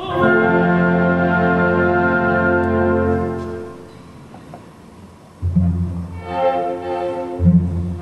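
Orchestra with strings to the fore: a full chord held for about three and a half seconds, fading away. After a quieter moment, low string chords with heavy bass notes come in about five and a half seconds in, and again near the end.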